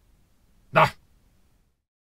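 A man's short, loud "Ah!" exclamation about a second in. Shortly after, the sound cuts off to dead silence.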